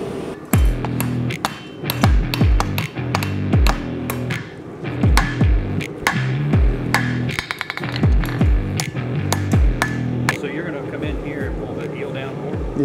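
Hand hammer striking a red-hot steel knife blade on an anvil, sharp ringing blows at an uneven pace as the blade's point is forged. The blows sit over background music with a heavy, deep beat.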